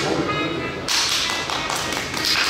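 A few people clapping their hands in applause, starting about a second in, over upbeat pop music playing from a screen.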